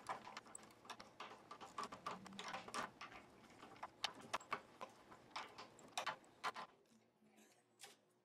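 A plastic string winder cranking a classical guitar's tuning machines to slacken the strings: a quick, irregular run of light clicks and rattles that stops about seven seconds in.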